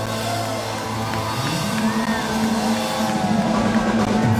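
Live rock band playing through the venue sound system, with sustained low notes that step up in pitch about one and a half seconds in.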